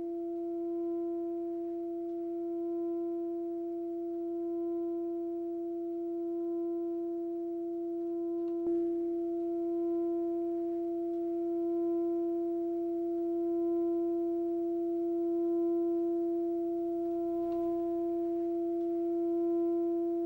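A steady electronic drone tone held on one mid pitch with a few faint overtones, gently swelling and easing in loudness every couple of seconds. It starts and stops abruptly, as an edited-in sound effect would.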